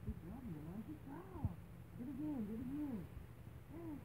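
A baby babbling: a string of short sing-song vocal sounds, each rising and falling in pitch.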